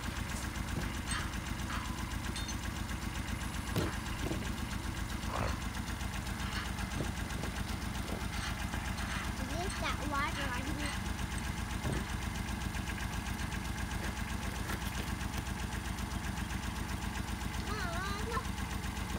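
Compact loader tractor engine idling steadily.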